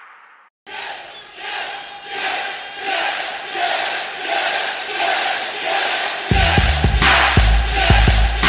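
A large crowd chanting "Yes!" in steady rhythmic swells, roughly once a second. About six seconds in, a hip hop beat with heavy bass and sharp drum hits comes in under the chant.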